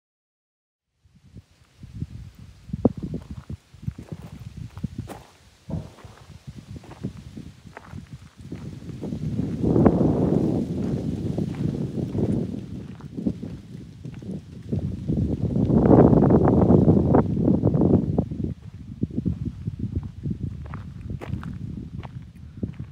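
Footsteps on gravel as a handheld phone camera is carried, with short crunching clicks under a heavy low rumble on the microphone that swells twice, around ten and sixteen seconds in.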